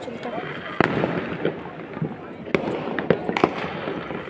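Firecrackers going off in the surroundings: scattered sharp cracks over a steady background hiss, one about a second in and a quick cluster of several in the last second and a half.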